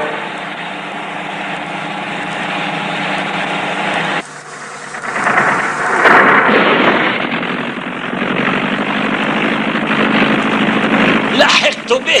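Sound effect of car engines running in a chase: a steady engine hum that drops off about four seconds in, then swells loud again as a car rushes past and keeps running steadily, with sliding tones near the end.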